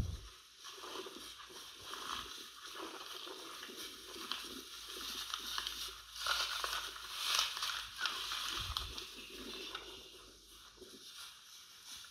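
Irregular rustling and crunching of long dry grass as cattle move through it and graze, louder in the middle and fading toward the end.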